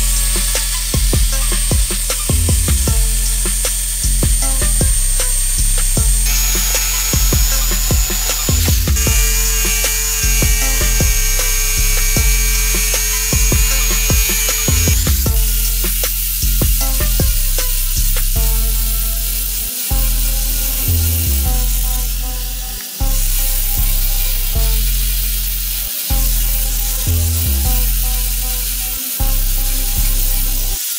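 Background music with a steady bass beat over power-tool noise. In the first half a Black & Decker jigsaw with a high whine cuts a curve in a wooden board. From about halfway, an angle grinder with a sanding disc grinds the board's edge.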